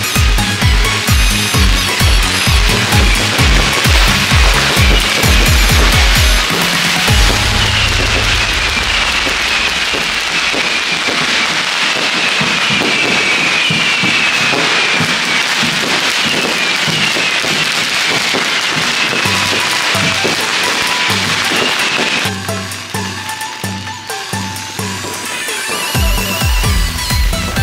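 Electronic dance music with a heavy beat of about two strokes a second. About six seconds in, a long string of firecrackers starts crackling without a break and covers the music for about fifteen seconds. The beat comes back near the end.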